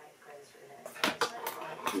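Hair-cutting scissors clicking sharply two or three times, starting about a second in.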